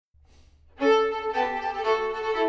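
A string quartet starts playing about a second in, with the violin most prominent, bowing a tune in a few short held notes.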